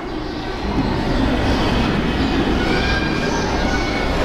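A loud, steady rumbling noise that swells up over about the first second and then holds, with faint high whining tones through the middle.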